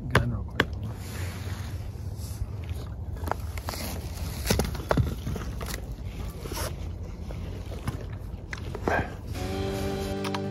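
Scattered sharp clicks, knocks and scrapes of hand-handled gear (a large serrated knife and a rifle) over a low wind rumble on the microphone. Background music comes in near the end.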